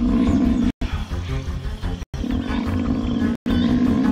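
Lion roaring over background music, the sound cut by brief silent dropouts roughly every second and a half.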